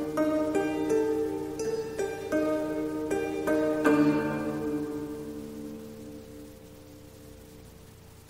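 Zither-family string instrument playing a slow melody of struck notes, each one ringing on. The last note, about four seconds in, is the loudest and is left to ring and fade away.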